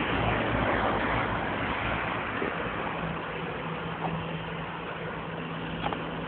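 Street traffic noise: a steady wash of vehicle sound that slowly fades, with a low engine hum joining about three seconds in.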